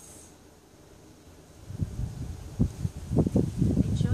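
Wind gusting across the microphone, a low, uneven rumble that starts a little before halfway through and comes and goes in gusts.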